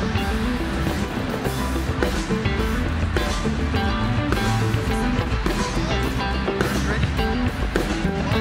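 A band playing music with a steady beat.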